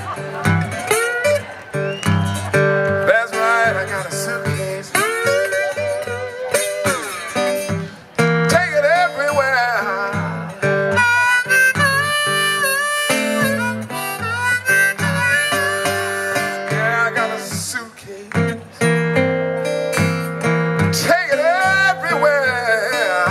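Blues instrumental on a metal-bodied resonator guitar played with a slide: notes glide up and down over a steady picked bass line.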